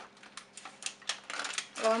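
Aluminium foil crinkling in short, irregular crackles as hands roll and fold it tight.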